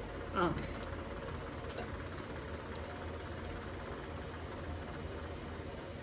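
A brief spoken "um", then a steady low background hum with a couple of faint ticks.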